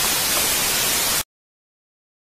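Loud burst of TV-style static hiss, a glitch sound effect, lasting just over a second and cutting off abruptly into dead silence.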